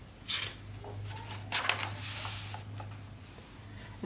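A picture book's paper page being turned by hand: a few soft handling clicks and a paper rustle about two seconds in.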